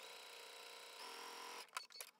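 Domestic sewing machine running faintly as it stitches a short seam through quilt fabric, picking up speed about a second in and stopping soon after, followed by a couple of small clicks.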